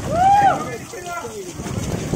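A rider's whooping shout on a tube water slide, one loud cry rising then falling in pitch in the first half-second, followed by a few shorter cries. Steady rushing water and the tube sliding on the chute run underneath.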